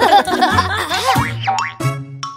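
Children's-song backing music with a cartoon sound effect: wobbly tones sliding up and down for about the first second, then settling back to the plain music.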